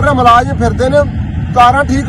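Only speech: a man talking loudly and without pause, over a steady low rumble.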